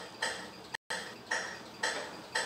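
Metronome ticking at 115 beats per minute, a sharp click about every half second, each with a short ringing decay.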